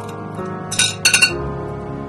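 Tongs lifting a fine silver cuff bracelet out of a glass dish of liquid: metal clinking on glass in two short clusters about a second in, over background music.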